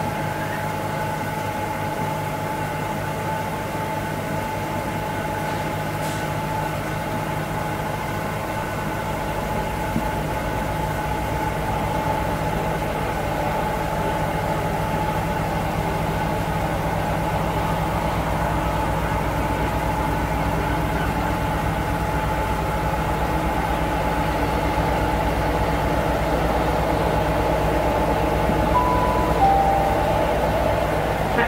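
Class 60 diesel-electric locomotive running slowly as it hauls a loaded stone train closer, its steady engine note growing gradually louder. A two-note station chime sounds near the end.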